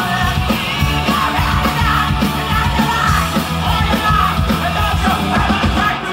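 A live rock band playing loud: distorted electric guitars, bass and a drum kit with a steady beat, and a singer shouting into the mic.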